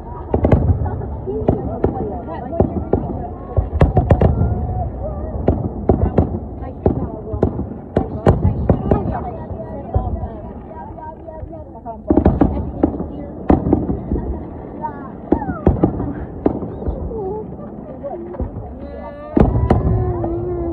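Fireworks going off in a long run of sharp, irregular bangs, some in quick clusters.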